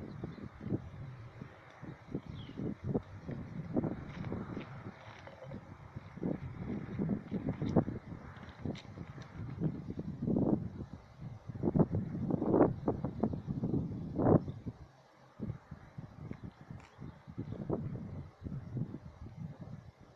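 Wind buffeting the microphone in uneven low gusts, strongest around ten to fourteen seconds in, easing briefly after that.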